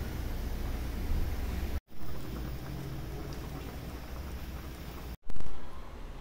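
Water running steadily as tomatoes are washed in a tub. The sound cuts out abruptly twice, and a short louder burst follows the second break.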